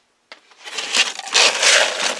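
A cat-food bag rustles and crackles as it is handled: a loud, dense, crinkling rush that builds and is loudest in the second half, after a moment of dead silence at the start.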